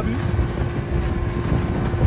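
Motorboat engine running at speed across open water: a steady rumble with a constant hum, with wind buffeting the microphone.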